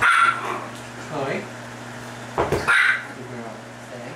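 A dog barking: two sharp, high barks about two and a half seconds apart, with a weaker one in between.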